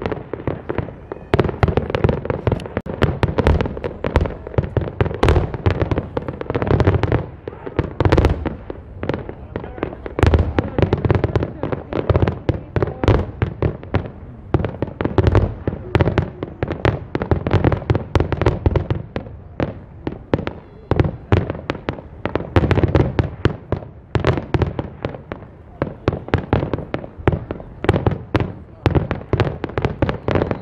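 Aerial fireworks display: a dense, continuous barrage of shell bursts, several overlapping bangs a second with no let-up.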